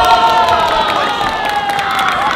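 Long, drawn-out kiai shouts from competitors in a bayonet-fencing bout, several voices held and overlapping, with a few light clacks.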